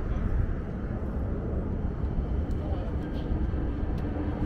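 Open-air rooftop ambience: wind rumbling on the microphone over a steady wash of city noise from the streets far below, with faint voices of people nearby.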